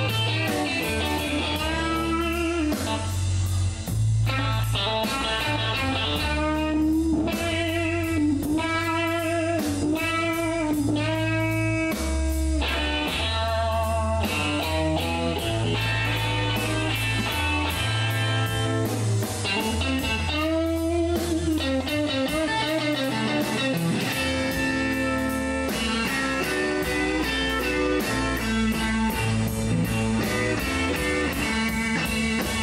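A live electric blues band playing an instrumental passage. A Stratocaster-style electric guitar plays lead lines with bent notes over stepping bass notes and a steady drum beat.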